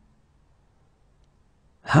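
Near silence for most of the moment, then a voice begins speaking near the end.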